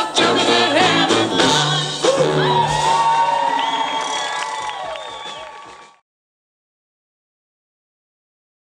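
Live band with trombone, acoustic guitar and singing finishing a song on a long held note, with whoops and cheering from the audience. The sound fades down and cuts to silence about six seconds in.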